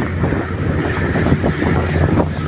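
Flatbed delivery truck running down a dirt road, heard from its open cargo bed: a steady low engine-and-drivetrain drone with frequent knocks and rattles from the bed and its load of lumber.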